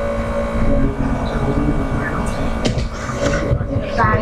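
Faint, distant voices of students answering a question, over a steady low rumble and electrical hum in the room.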